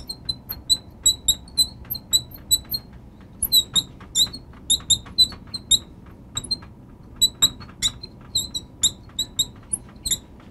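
Marker squeaking on a glass lightboard as words are handwritten: many short, high squeaks, one per pen stroke, in quick clusters with brief pauses between letters.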